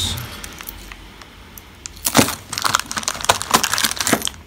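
Metal watches and costume jewellery clinking and rattling against each other as a hand rummages through a box of them. The sound is quieter for the first couple of seconds, then comes as a quick run of clinks in the second half, the loudest about two seconds in.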